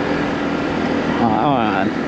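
Motorcycle on the move at a steady speed: a steady engine drone mixed with wind and road noise. A short spoken phrase comes in over it in the second half.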